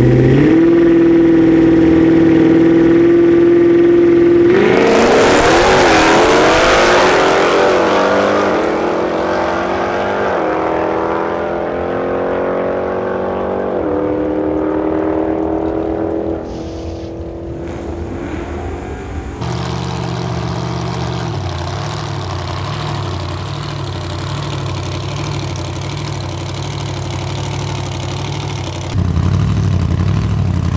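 V8 engines of a Chrysler 300 SRT8 and a Jeep Grand Cherokee Trackhawk held at steady revs on the drag-strip start line, then launching about four seconds in. Each engine rises in pitch through the gears, dropping at every upshift. About two-thirds of the way through, a hot-rod's engine runs at a lumpy idle, and it revs up louder near the end.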